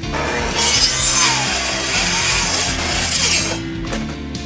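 Electric miter saw cutting through a thick wooden beam: a loud cut of about three and a half seconds that stops suddenly. The motor's pitch drops as the blade bites into the timber and rises again near the end of the cut. Background guitar music plays underneath.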